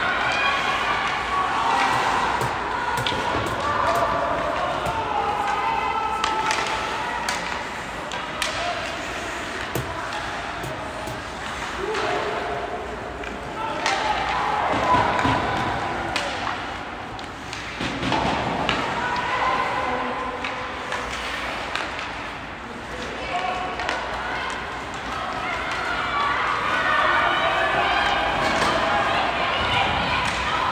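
Indistinct talk from spectators in the stands of an ice hockey game, with sharp clacks of sticks and pucks and thuds against the boards heard repeatedly.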